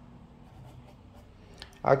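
Faint scratching of a fine brush dragging paint across a canvas panel, over a low steady hum. A man's voice starts near the end.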